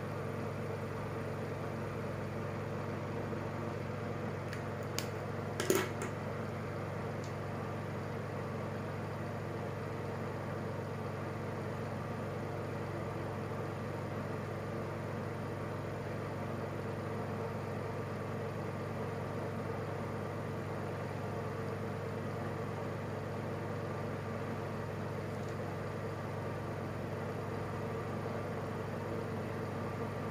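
A steady mechanical hum runs throughout, with two short clicks a little after five seconds in.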